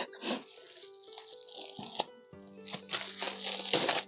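Plastic bubble wrap and a clear plastic pin bag crinkling and rustling as they are handled, in a few bursts with the longest near the end, over soft background music.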